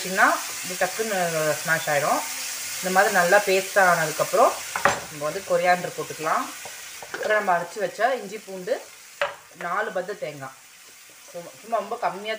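A tomato masala sizzling in a nonstick frying pan as it is stirred with a wooden spatula; the sizzle fades over the second half. A woman's voice sounds over it.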